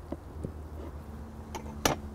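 A chef's knife cutting through a hard-boiled egg and meeting a plastic cutting board with one sharp knock near the end, over a low steady hum.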